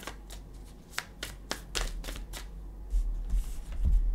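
A deck of tarot cards being shuffled by hand: a run of sharp card snaps, about three or four a second, then a few dull thumps near the end.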